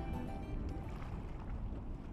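Sea-surface ambience: a steady low rumble of wind on the microphone with water lapping, after background music cuts off right at the start.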